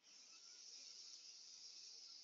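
A long, deep inhale through the nose: a faint, steady hiss of breath.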